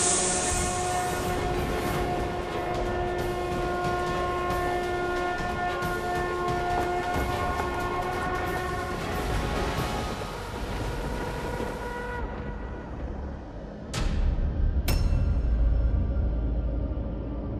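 A conch shell (shankh) blown in one long held note over a dramatic music score, fading away about ten seconds in. Near the end come two quick whooshes and a deep rumble.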